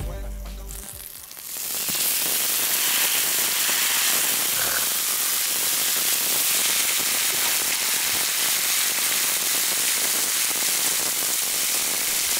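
Thick bone-in beef short ribs searing on a hot round griddle pan over a portable gas burner: a loud, steady sizzle that starts about two seconds in and holds evenly.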